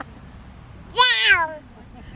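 A toddler's short high-pitched squeal about a second in, falling in pitch as it ends.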